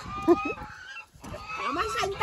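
A group of men laughing. A steady honking call overlaps the first half-second.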